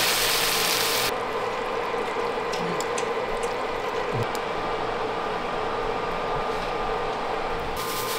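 Fat sizzling and crackling in a frying pan as a block of cheese melts in it, over a steady hum. The sizzle turns duller about a second in and brightens again near the end.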